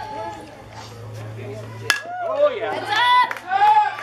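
A single sharp crack of the pitched softball striking about two seconds in, followed at once by high-pitched spectator voices yelling and cheering.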